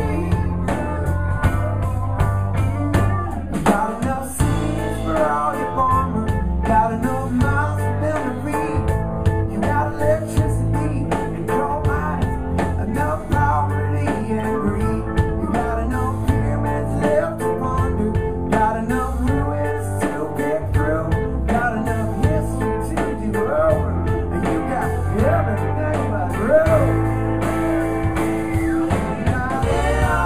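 Live band playing a rock song with electric guitars and keyboard over a steady drum beat.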